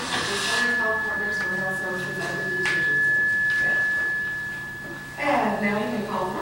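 A steady, high-pitched electronic tone that holds one pitch for about six seconds, typical of feedback ringing through the meeting room's microphone and speaker system. Quiet voices are heard under it, and a louder voice comes in near the end.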